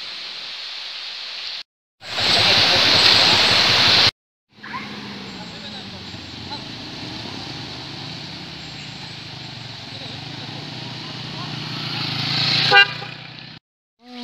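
Traffic passing on a wet road: a loud two-second rush of noise, then steady tyre and engine noise that swells as vehicles approach. A short horn toot sounds near the end.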